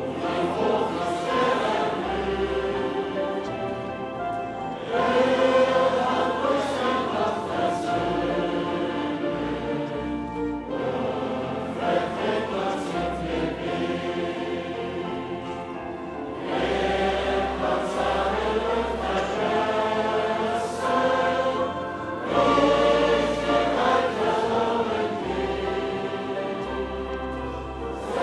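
A large congregation singing a hymn together over steady low accompanying notes, line by line, with a new, louder phrase starting about every five to six seconds.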